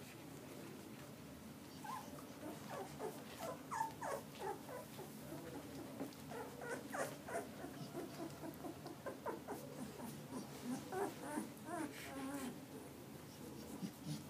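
A litter of young puppies whimpering and squeaking in many short, high, falling calls as they tussle together, starting about two seconds in and going on in a busy, overlapping patter.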